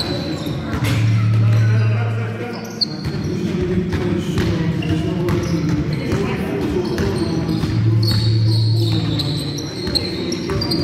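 A basketball bouncing on a wooden sports-hall floor in play, with sharp knocks from the ball and shoes echoing in the hall. A steady low hum comes in about a second in and again near the end.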